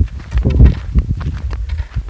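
Wind buffeting a phone's microphone in low rumbling gusts, loudest about half a second in, with a few short knocks from walking or handling the phone.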